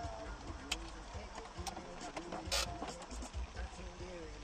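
Low rumble of a car driving, heard from inside the cabin, with faint voices, a few sharp clicks and a brief hiss about two and a half seconds in.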